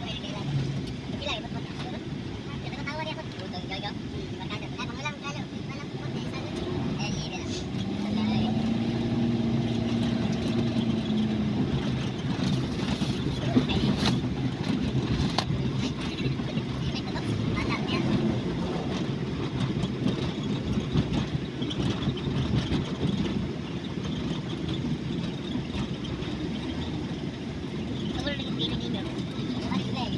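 Steady road and engine noise inside a moving van, with indistinct talk from passengers in the cabin.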